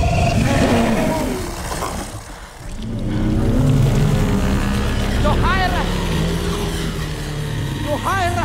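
Film soundtrack of a dragon scene: a heavy low rumble with a music bed. About five seconds in come a few short, high cries that rise and fall.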